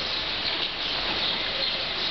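Light rain shower falling steadily, an even hiss with no breaks.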